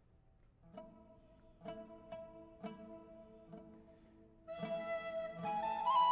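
An oud begins a slow run of single plucked notes about a second in, each ringing out. Near the end a wooden flute comes in with held notes that step upward in pitch.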